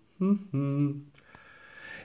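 A man's short held hum, a hesitant "hmm" of under a second at a fairly steady pitch.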